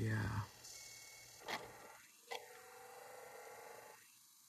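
Insignia portable DVD player's disc drive reading a newly loaded disc: two faint clicks under a second apart, then a faint whine that slowly rises in pitch as the disc spins up.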